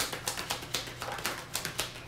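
A tarot deck shuffled by hand: a fast run of light card-on-card flicks, about eight to ten a second.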